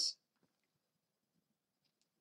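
The tail of a boy's spoken word, then near silence with one faint tick.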